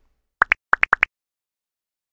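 Electronic outro sound effect: six quick bubbly bloops in three pairs, each bloop rising in pitch and the second of each pair higher, all within about two-thirds of a second.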